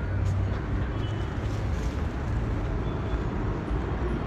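Steady low rumble of outdoor background noise with a faint even hiss above it.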